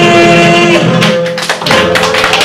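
A woman's voice holds the song's final long sung note, which ends under a second in. About a second in, hand clapping starts and carries on.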